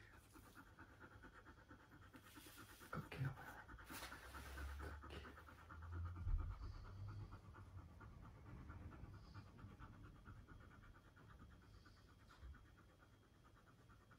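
A dog panting fast and steadily, faint, with a soft low bump about six seconds in.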